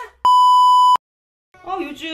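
An edited-in bleep: a single steady, high electronic beep lasting under a second that starts and cuts off abruptly.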